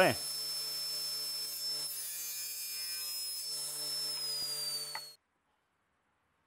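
Table saw running with a steady high whine, its blade crosscutting plywood on a crosscut sled for a second or two in the middle. From about four seconds in the whine falls in pitch as the saw winds down, and the sound cuts off abruptly about five seconds in.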